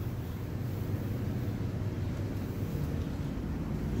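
Dual-action (DA) sander running steadily in the background, a low, even drone.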